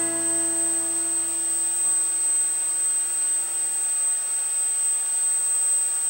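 The last strummed acoustic guitar chord ringing out and dying away over about four seconds, leaving a steady hiss with a thin, high, steady whine.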